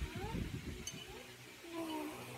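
A pet cat meowing: a short rising call soon after the start and a longer falling call near the end, over a low rustling thump at the start.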